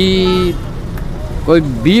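A man speaking in Dogri. For about a second after a drawn-out syllable he pauses, and steady roadside traffic noise fills the gap before his speech resumes.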